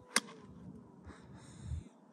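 A golf iron striking a ball on the fairway: one sharp click just after the start, then faint rustling.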